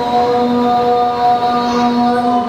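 A boy reciting the Qur'an aloud in melodic style, drawing out one long vowel held on a steady pitch between words.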